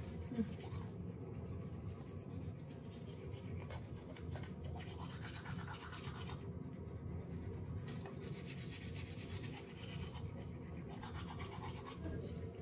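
Electric toothbrush running steadily while brushing teeth, its buzz mixed with the scrub of bristles in the mouth.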